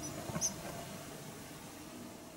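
Faint small clicks and two short, high squeaks in the first half second, then low, quiet background noise.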